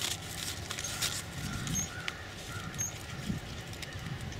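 Paper fruit bag crinkling and rustling as hands work it loose from an apple on the branch, with many small irregular crackles.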